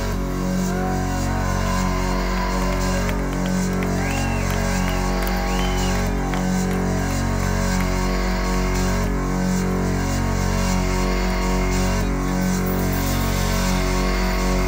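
Live industrial rock band music through a club PA: a sustained electronic drone with a low pulse that swells about every two seconds, with held keyboard tones above it and a few short rising-and-falling glides in the middle.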